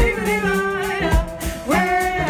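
Live band music: a woman sings held notes over acoustic guitar, upright double bass and drums, with an accordion in the band. Low bass notes and drum hits keep a steady beat.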